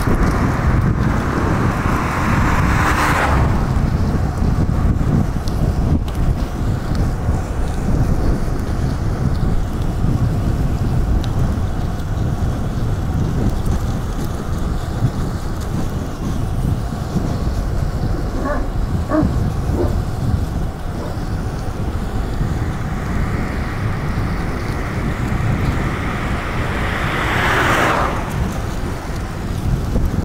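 Steady wind rumble on the microphone of a camera moving along with a cyclist on a road. Two vehicles rush past, one about three seconds in and one near the end, each swelling up and then dropping away quickly.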